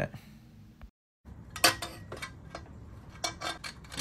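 Stainless steel exhaust header pipe clinking and knocking against metal as it is worked into the exhaust port with its gasket. A series of sharp metal clinks follows a brief total dropout about a second in, the loudest about a second and a half in.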